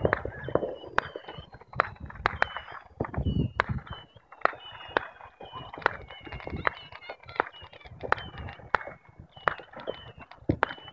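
Distant fireworks going off: a run of sharp cracks and pops, about two a second at uneven spacing, over a short high chirp that repeats about twice a second.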